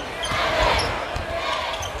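A basketball dribbling on a court in televised game audio, with voices in the background.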